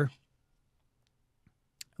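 The tail of a man's spoken phrase, then near silence broken by two faint short clicks near the end.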